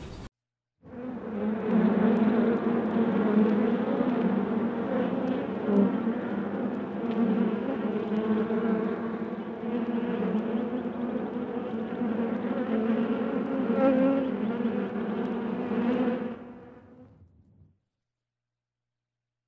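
A dense, steady buzz of many honeybees in flight. It starts about a second in and fades out near the end.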